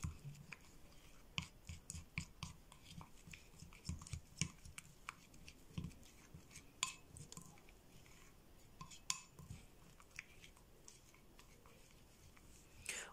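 A small spoon stirring and scraping a thick, creamy paste in a bowl: faint, irregular soft clicks and scrapes against the bowl's sides.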